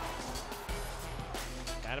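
Hockey arena crowd noise under faint background music.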